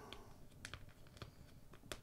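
Faint scattered small clicks and light handling noise from fingers picking at an old LEGO sticker, trying to peel it off its backing sheet.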